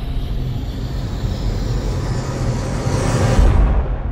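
Cinematic logo sting: a rumbling whoosh swells over a steady low drone and peaks in a heavy hit about three and a half seconds in, then begins a long fade.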